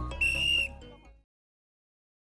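A whistle blown once: a short, steady, shrill blast of about half a second over low traffic rumble. Then the audio cuts off just over a second in.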